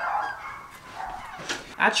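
A dog barking in the first half second, then a single sharp knock about one and a half seconds in as a door is shut.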